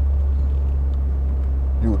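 Steady low drone of engine and road noise inside the cabin of an older BMW cruising at steady speed.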